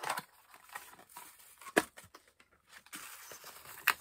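A small cardboard gift box is handled and opened by hand: light scraping and rustling of card and paper, with two sharp snaps, one about halfway through and one near the end.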